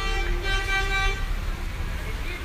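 A horn held on one steady note for about a second, then stopping, over a constant low background rumble.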